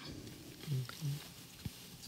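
A faint, low two-part murmur from a person's voice, like an "mm-hmm", followed by a light click; otherwise quiet room tone between answers.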